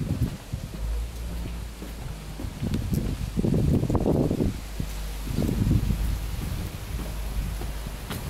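Wind buffeting the camera microphone in gusts: a low rumble, strongest in two gusts around the middle.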